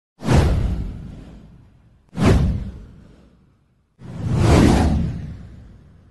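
Three whoosh sound effects of an animated title intro. Two quick swooshes come about two seconds apart, then a slower swelling one about four seconds in, each fading away over a second or two.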